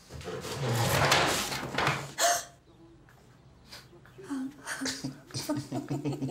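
Wordless human vocal sounds: a long breathy exhale with some voice in it, a sharp breath at about two seconds, then from about four seconds in, short regular bursts of quiet laughter.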